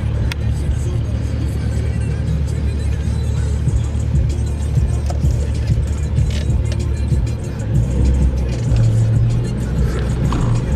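Music playing over the low drone of a car driving slowly, heard from inside the cabin; the low hum grows a little louder about eight seconds in.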